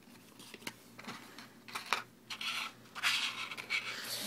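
Handling noise from a small flash-drive package: scattered clicks, scrapes and rustles from the box and its clear plastic tray being moved, busier and louder near the end.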